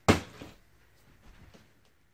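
A plastic water bottle flipped onto the top of a plastic drawer unit, landing with one sharp knock just after the start, then a quieter knock as it settles.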